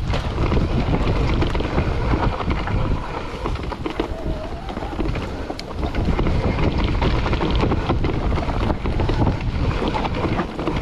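Wind buffeting the microphone of a mountain bike's handlebar camera as it rides fast down a dirt forest trail, with the rumble of the tyres on the ground and frequent small knocks and rattles from the bike over roots and bumps.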